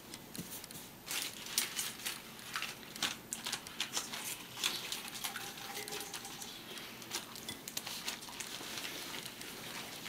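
Wet lettuce leaves being lifted from a metal colander and laid and patted on paper towels: an irregular run of small rustles, taps and clicks.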